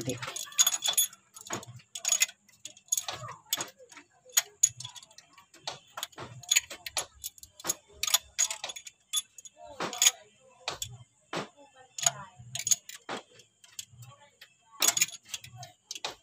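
Steel pushrods clinking against one another and against the Toyota 5K engine's cylinder head as they are dropped into place one by one, a quick irregular series of sharp metallic clicks and taps.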